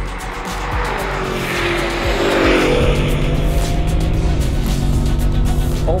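Engines at full throttle down a drag strip: a V8 climbs in pitch, drops at a gear change, then holds steady under load, with background music over it.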